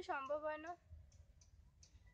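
A woman's voice finishing a short word in the first moment, then a quiet pause with faint scattered clicks over a low rumble.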